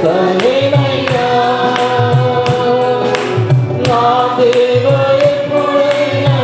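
Mixed choir of men and women singing a Telugu Christian worship song in long held notes, over electronic keyboard backing with a steady beat.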